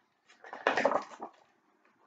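Pages of a large hardcover picture book being turned by hand, a short paper flap and rustle about half a second in.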